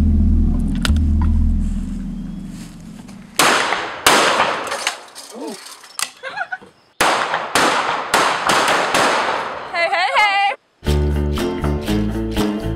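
Handgun shots at tin cans in two quick strings, the first about three and a half seconds in and the second about seven seconds in, each shot with a short ringing tail. A brief woman's voice follows.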